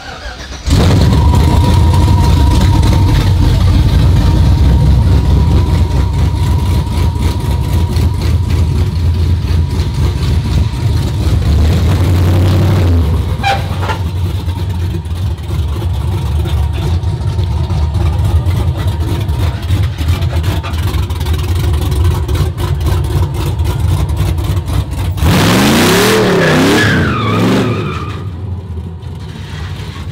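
Pickup drift truck's engine starting up about a second in and running loudly and steadily, then revved up and down several times near the end as the truck is driven out and slid around.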